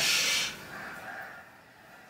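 A person's sharp, hissing breath out, loud for about half a second and then trailing off within the next second.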